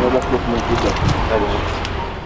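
Men talking in the open over a steady low rumble of outdoor background noise.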